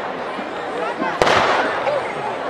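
A single firework bang about a second in, followed by a short rush of noise, over the voices of a large crowd.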